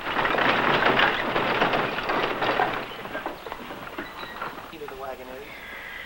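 Horse-drawn wooden freight wagon pulling away: a steady rattle of wheels and hoofbeats that fades over the first half, leaving separate clops that thin out.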